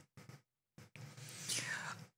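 Faint breathy, whispered vocal sounds from a person: a couple of brief soft sounds, then about a second of breath with a falling sweep near the end, as if breathing in or out before speaking.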